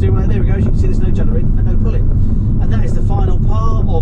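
Inside the cab of a moving Citroën Dispatch HDi diesel panel van: a steady low rumble of engine and road noise, with a man talking over it.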